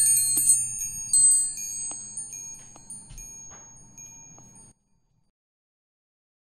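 Metal door bell with hanging chime tubes, nudged by a dog so it jingles and rings: struck at the start and again about a second in, then the high ringing dies away and cuts off suddenly about four and a half seconds in.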